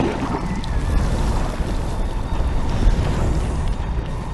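Soundtrack sound effect: a loud, steady rushing noise with a deep rumble, with faint music under it.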